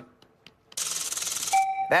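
A brief hush, then studio audience applause breaks out about three quarters of a second in, with a short electronic game-show chime sounding over it near the end: the correct-answer signal.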